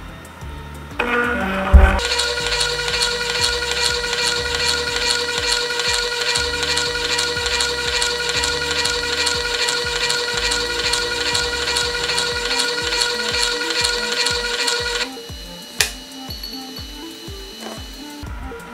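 Homemade 3D-printed peristaltic pump's motor whining as it spins up, its pitch rising over about a second, then running at a steady high pitch with a fine regular pulse. It stops abruptly about thirteen seconds later, and a single sharp click follows.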